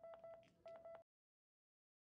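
Philips HeartStart MRx defibrillator sounding a rapid series of short, faint electronic beeps on one tone. The beeps cut off abruptly about a second in, followed by silence.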